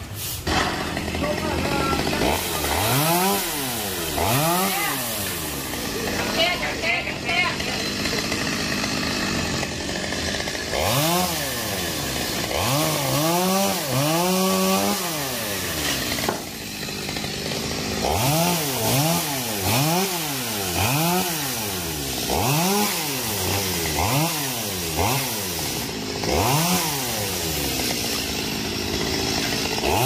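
Chainsaw revving up and down over and over, each rise and fall of pitch lasting about a second, while cutting the limbs of a large sộp (fig) tree.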